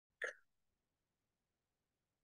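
Near silence, broken once about a quarter second in by a very short, faint vocal blip, like a clipped fragment of voice.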